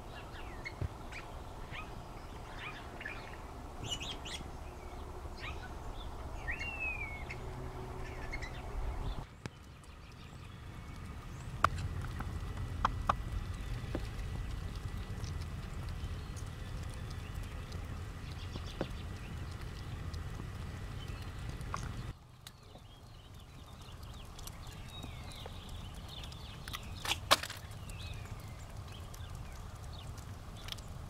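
Outdoor ambience: a steady low rumble of wind, with scattered short bird chirps in the first third. Later there is a faint steady high tone and a few sharp ticks, one louder click near the end.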